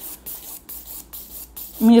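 A hand nail file, 100/180 grit, scraping back and forth across an acrygel artificial nail in short even strokes, about three a second, as the nail is shaped and thinned.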